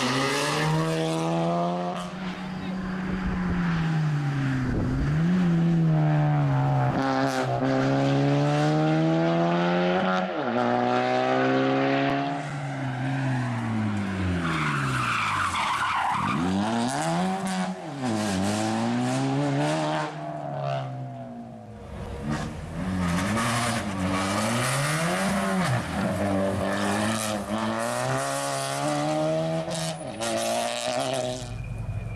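Suzuki Swift rally car driven hard on a stage: the engine revs up, drops on each gear change and under braking, and climbs again, over several passes. Around the middle the tyres squeal as the car swings through a tight hairpin.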